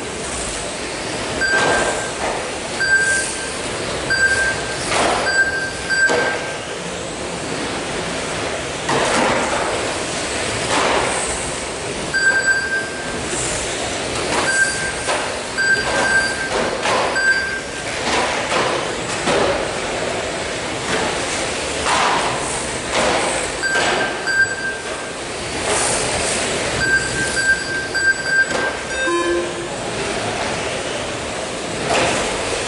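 Electric 1/12-scale GT12 RC cars racing on carpet, their motors and tyres whooshing past in repeated waves. Short electronic beeps from the lap-timing system come in clusters as cars cross the line. A brief clatter comes near the end.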